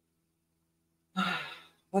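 A man sighs once, a breathy voiced exhale about a second in that fades away over half a second, after a second of near silence.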